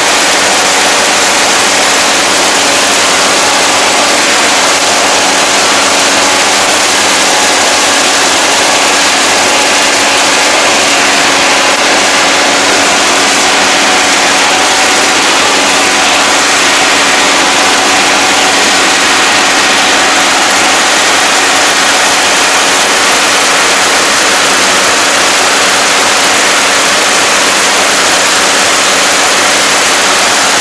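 Yanmar AE447 combine harvester running steadily while cutting and threshing wheat: a loud, even mechanical din with a steady hum, heard close up from the operator's seat.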